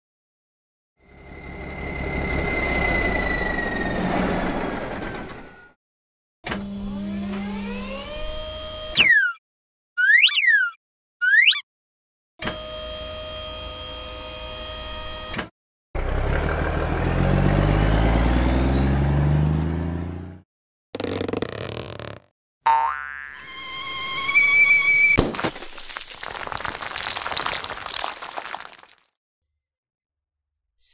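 A string of cartoon sound effects with short gaps between them: stepped rising tones, three quick springy boings, a steady buzzing tone, and a cartoon truck engine revving with rising pitch, the loudest part, about midway.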